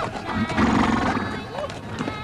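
A horse whinnies about half a second in, a single call lasting under a second, over a song with a sung melody.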